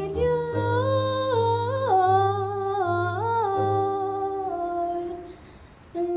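A woman singing a slow melody in long held notes that slide from pitch to pitch, over sustained low electric keyboard chords. It fades out near the end, between phrases.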